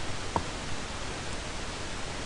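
Steady background hiss of the recording, with one short faint click about half a second in.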